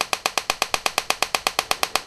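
Homemade TEA nitrogen laser firing repeatedly, a rapid, even train of sharp electrical snaps from its discharge at about a dozen a second. Each snap is one pulse pumping the dye laser.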